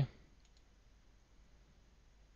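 A single faint computer mouse click about half a second in, over quiet room tone.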